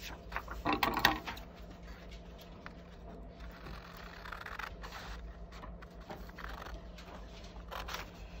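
A paper pattern is lifted and handled with a rustle about a second in, then scissors cut through the paper in several short stretches.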